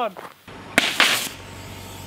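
Homemade compressed-air water bottle rocket launching: about half a second in, the cork blows out and a sudden hissing burst of air and spraying water lasts about half a second. A lower steady noise follows.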